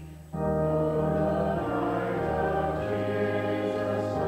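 A congregation singing a hymn in unison with sustained organ chords beneath. After a short breath between lines right at the start, the singing and organ come back in and move through slow chord changes.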